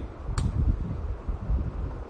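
Low, uneven rumbling noise on the microphone, with a single sharp keyboard click about half a second in, the key press that runs the compile command.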